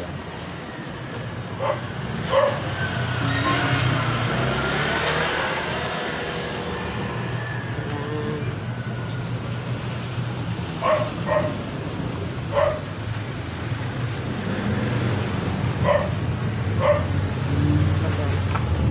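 A motor vehicle running with a steady low rumble, swelling louder about three to six seconds in, while a dog barks several times.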